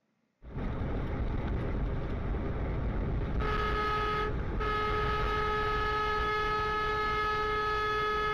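A semi truck's horn sounding over steady road and cab noise: a short blast, a brief break, then one long held blast. The horn starts a few seconds in, as a silver car in front of the truck crowds its lane.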